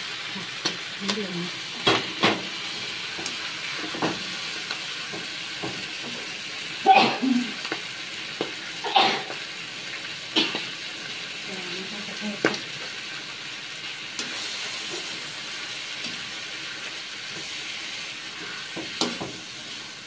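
Squid and vegetables sizzling in a non-stick frying pan with a steady frying hiss, while a slotted metal spatula stirs them. Several sharp knocks and scrapes of the spatula against the pan come through, the loudest about seven and nine seconds in.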